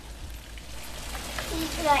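A steady, even hiss with no distinct events, then a person starts speaking near the end.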